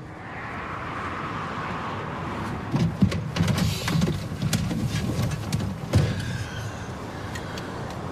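A van's driver door opening and a man climbing into the seat, with clicks, rustles and knocks, after a couple of seconds of steady hiss. The door then shuts with a thud about six seconds in.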